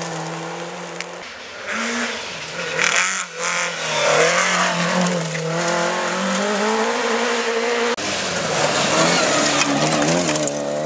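Rally cars at speed on a gravel forest stage: engines revving hard, the engine note rising and falling through the gears, over the hiss of gravel thrown up by the tyres. The sound changes abruptly about a second in and again near the end as one car's pass cuts to another.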